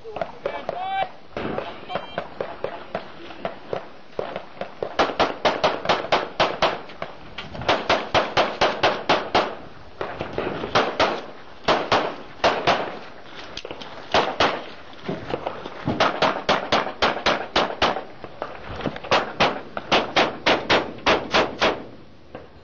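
Handgun fired in several fast strings of shots, each a rapid run of sharp cracks with short pauses between strings, as the shooter works through a practical-shooting stage.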